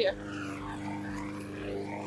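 Steady low hum of an engine running in the background, holding one even pitch.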